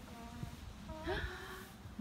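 Faint, brief voice sounds, a couple of short pitched fragments, over a steady low rumble.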